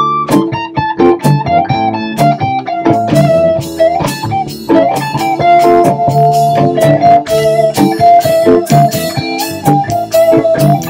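Electric guitar and acoustic guitar playing together. The electric plays a lead line of held notes, some sliding in pitch, over plucked chords on the acoustic in a minor-key vamp from E minor to A7.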